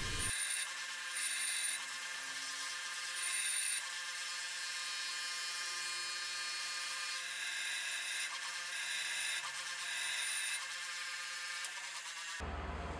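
Bench grinder wheel grinding a small steel lathe tool bit held by hand, a steady hissing grind that grows louder for a few stretches as the bit is pressed to the wheel.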